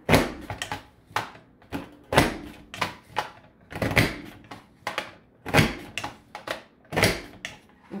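Border Maker punch cartridge pressed down again and again through yellow cardstock: a run of sharp clicks, about one a second, as the punch is worked along the paper strip.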